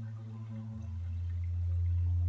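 Soft ambient background music of sustained low drone notes. A deeper note comes in beneath them about a second in and swells slightly.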